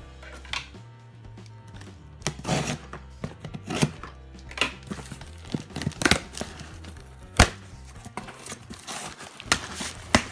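Packing tape and a paper shipping label being ripped off a cardboard box by hand: a run of short, sharp rips and crinkles, the sharpest about seven seconds in.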